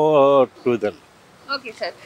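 A man speaking in an interview: a drawn-out vowel at the start, then a few short words with a brief pause between them.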